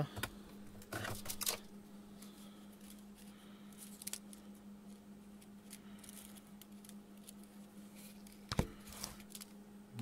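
Faint rustling and a few light clicks from a reel of solder and other bench items being fetched and handled, with one sharp click near the end, over a steady low hum.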